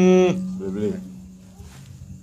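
A man's voice through a microphone holds a drawn-out, closed-mouth 'mmm' at the start, then gives a short syllable and falls quiet. A steady low electrical hum runs underneath.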